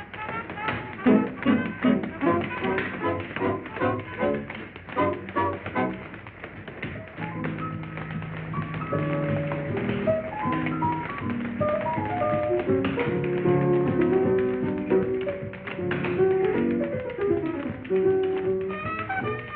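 A solo tap dancer's metal-tipped shoes tapping rapidly on a stage floor, with a swing big band accompanying. For about the first six seconds the dense taps stand out over short band hits. Then the band plays held chords, with lighter taps beneath.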